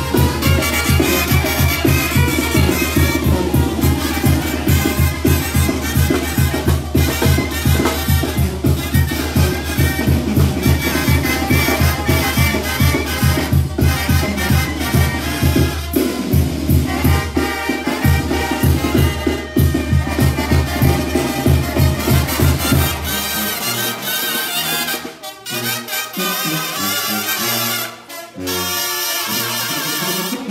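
Brass band playing, trumpets to the fore, over a steady beat with heavy bass. About three quarters of the way through, the bass and beat drop out and the playing turns thinner and more broken.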